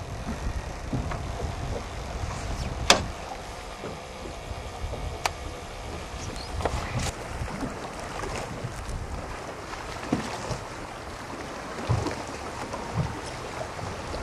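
Wind buffeting the microphone and water splashing around a small fishing boat on a choppy sea, with a sharp click about three seconds in, another about five seconds in, and a few knocks near the end.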